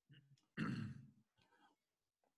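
A person's short sigh, about half a second long, starting about half a second in.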